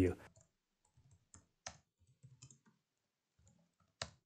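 Faint, scattered computer keyboard keystrokes at irregular intervals as router commands are typed in.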